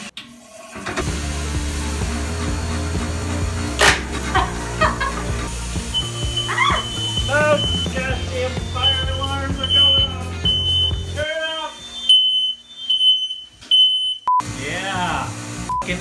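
Smoke alarm beeping, a repeated high-pitched beep that is loudest in the last few seconds, set off by smoke from sugar burning in a cotton candy machine. Background music with a heavy bass line plays under it and stops about eleven seconds in.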